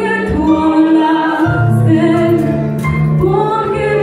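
A woman singing a worship song into a microphone, holding long notes, over a live band of keyboard and electric guitars.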